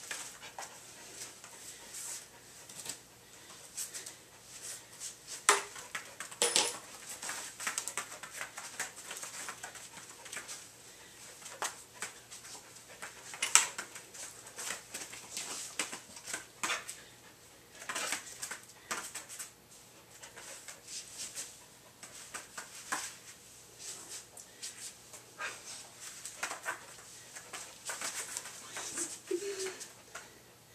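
A dog moving about, making short, irregular clicks and scuffs, with a few sharper clicks standing out.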